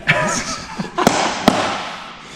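Men laughing, then two sharp smacks about half a second apart.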